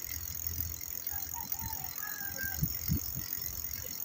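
A bicycle rolling along a concrete road, picked up by a phone fixed to the handlebars: a steady low rumble of tyres and wind with a couple of short knocks from the bike around the middle.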